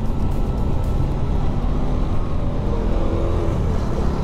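On-board sound of a motorcycle being ridden: the engine runs at a steady cruising pace under a heavy low rumble of wind and road noise.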